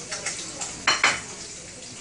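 Food sizzling in a frying pan while a cooking utensil stirs and knocks against the cookware, with two sharp clinks about a second in.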